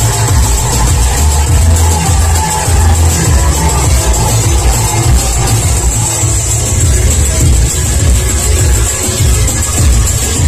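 Large kukeri bells worn at the waist clanging continuously as costumed performers walk, over loud music with a heavy bass beat.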